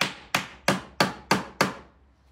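A hand hammer strikes a wooden kündekari panel of interlocking geometric pieces six times in an even rhythm, about three blows a second.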